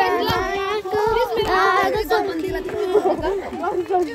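A voice singing a slow tune in long, wavering held notes.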